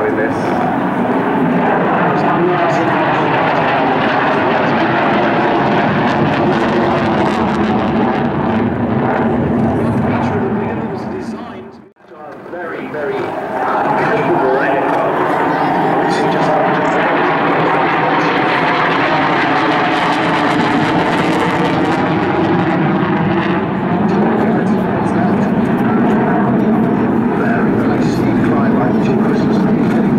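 Saab 37 Viggen's single afterburning Volvo RM8 turbofan, a loud, sustained jet noise from the aircraft flying its display. About twelve seconds in, the sound drops away sharply and comes back within a couple of seconds.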